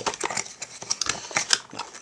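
Hard plastic clicking and knocking as the round compartment inserts of a clear plastic craft-storage organizer are pressed and pulled to unclip them; a quick run of separate clicks.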